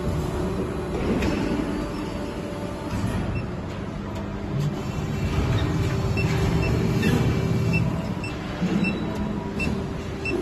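Hydraulic injection molding machine running on a factory floor: a steady low rumble and hum of the pump and machinery. From about halfway in there is a faint, regular ticking, about twice a second.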